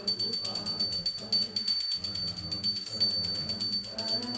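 Devotional kirtan: voices singing over a fast, continuous metallic ringing kept in steady rhythm, with a low sustained accompaniment underneath.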